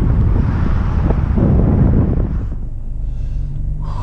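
Strong wind blowing across the microphone with a low rumble beneath it. About two and a half seconds in it gives way suddenly to the steady low hum of a van's engine running, heard from inside the cabin.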